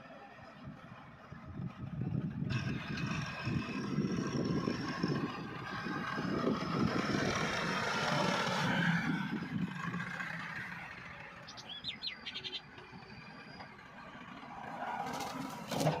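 Massey Ferguson 385 tractor's four-cylinder diesel engine running under load, pulling a five-tine cultivator through the soil. It is loudest for several seconds and then fades. A bird chirps briefly just past the middle.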